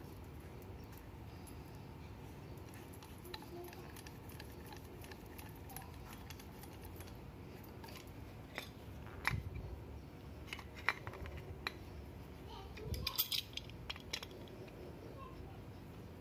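Light clicks and knocks of plumbing parts being handled: a brass gate valve with a threaded PVC adapter and metal pipe tools. The clicks are sparse, clustering in the second half, with the loudest knocks about a second apart.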